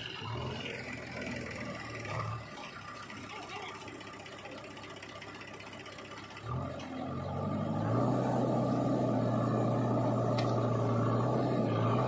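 Diesel engines of a backhoe loader and a tractor running. About six and a half seconds in, an engine speeds up, gets louder and holds a steady, higher note before easing off at the end.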